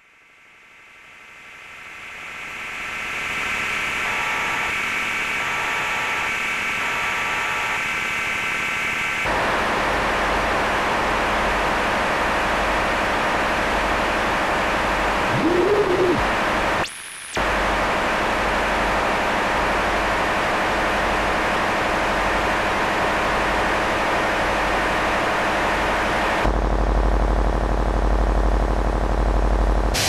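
Harsh noise drone music: a dense wall of static hiss with steady ringing tones inside it, fading up over the first few seconds. About nine seconds in it thickens and a low pulsing rumble comes in. It cuts out for a split second around the middle and shifts to a heavier low end near the end.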